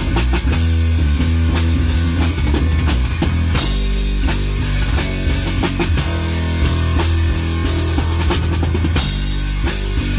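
Live rock band playing loud: a drum kit with constant kick and cymbal hits under electric guitar and bass guitar, the low end heaviest.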